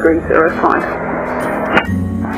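Radio speech over the aircraft's headset intercom, followed by about a second of radio hiss, then a low steady hum.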